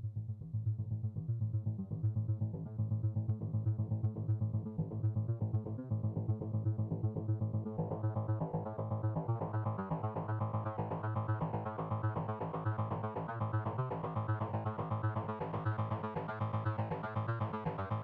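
Electronic music played live on hardware synthesizers: a pulsing, sequenced bass line under a fast repeating pattern. The sound grows brighter as it goes, with a clear step up about eight seconds in.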